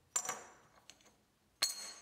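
Flat pieces of broken steel bar set down on one another on a workbench: two metallic clinks about a second and a half apart, each with a brief high ring, and a faint tick between them.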